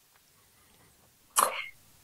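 Near silence, then about one and a half seconds in a single short, sharp cough-like sound from a person's throat.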